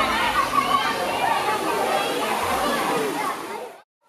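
Children's voices and water sloshing in a shallow pool. The sound fades out to silence just before the end.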